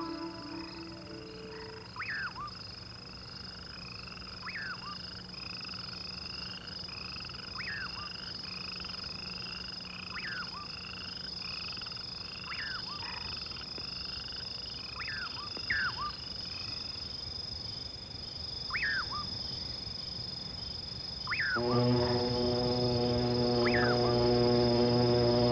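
Night ambience of frogs calling: a sharp downward-sweeping call every two to three seconds over a quieter, faster chorus of short repeated chirps. Near the end, music with sustained low chords comes in.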